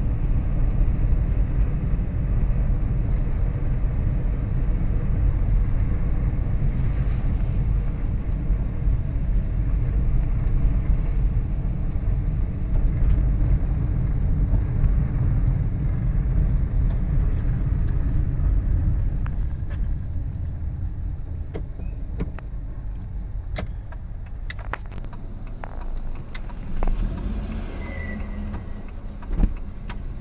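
Steady low road and engine rumble of a moving vehicle, heard from on board; it eases off somewhat in the last third, with a few sharp clicks near the end.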